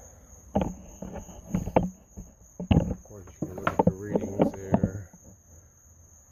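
A few sharp knocks and clatters of hand work on the outboard's powerhead, coming close together for a stretch after about three seconds, over a steady high drone of crickets.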